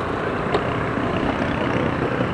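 Steady low rumble of vehicle engines and street traffic, with no distinct events.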